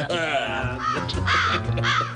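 A man making comic vocal noises, about three short pitched calls in the second half, over steady background music.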